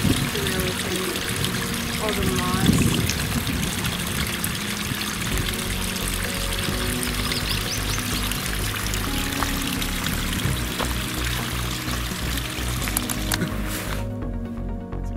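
A thin trickle of water running and splashing down a mossy rock face. Background music with a steady beat comes in about five seconds in.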